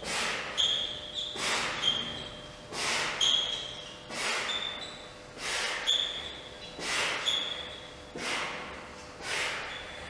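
A man's heavy, forceful breaths under strain as he drags a 570 kg sled with a neck harness, coming at a steady pace of about three every four seconds. Short high squeaks come between the breaths.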